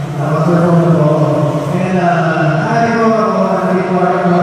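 Live concert sound: voices singing or chanting long, held notes in unison over the band, with the pitch shifting slightly about two and a half seconds in.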